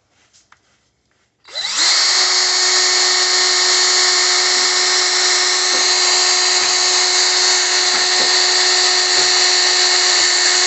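Cordless drill starting about a second and a half in, quickly coming up to speed, then running steadily with an even whine as it drills a hole through a small plastic toy part.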